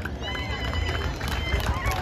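Outdoor gathering ambience in a pause of a man's speech over a microphone: a steady low rumble, faint distant voices and scattered small clicks, with a thin high steady tone through most of it.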